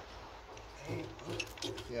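A man's low voice muttering under effort, ending in a "yeah", with a few faint clicks about halfway through.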